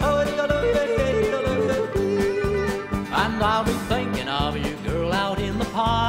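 Country song with a man yodelling, his held notes breaking in quick leaps between low and high pitch, over guitar and a steady bass beat.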